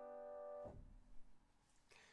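Upright piano holding a G major chord in first inversion (B, D, G) as it dies away, then cut off abruptly with a soft low thud of the dampers as the keys are released about two-thirds of a second in.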